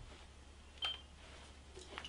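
Casio EX-F1 camera giving one short, high button beep about a second in, as its menu is stepped down toward the white balance setting.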